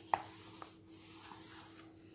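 A hand rubbing and smoothing down the glossy pages of an open knitting catalogue: a soft, quiet rustle of skin on paper, with a brief sharp click just after the start.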